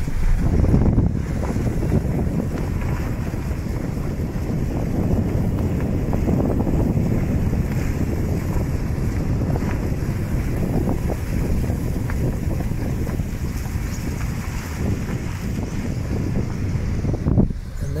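Car driving along a dirt road: a steady low rumble of tyres and engine, with wind buffeting the microphone at the side window.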